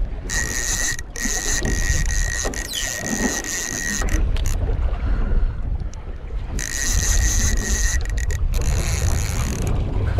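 Overhead fishing reel being cranked against a heavy fish, its gears giving a steady whirring whine in two spells of winding with a pause of about two seconds between. Wind buffets the microphone underneath.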